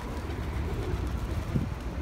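Wind rumbling on the microphone over a large flock of feral pigeons, heard faintly as they mill about.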